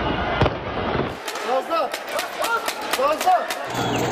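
Street protest sound: shouting voices over a noisy background, with a quick run of sharp bangs and pops through the middle.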